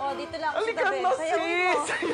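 Speech only: a man and a woman talking, without music.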